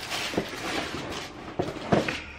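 Rustling and three soft knocks as the contents of a subscription box are handled and unpacked.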